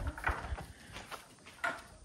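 Scattered footsteps and short knocks on a straw-covered barn floor, irregular and fairly faint, a few sharp ones in the first second and another about two thirds of the way in.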